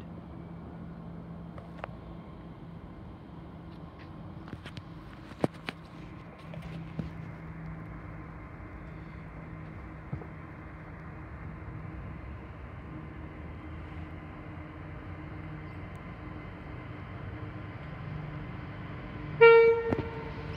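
Approaching freight locomotive heard from a distance: a low, steady engine drone that grows slowly louder, then a short, loud horn blast on one pitch near the end.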